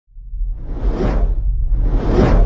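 Cinematic whoosh sound effects over a deep low rumble, rising out of silence into a rushing swell that peaks about a second in, with another starting near the end: the sound design of an animated logo intro.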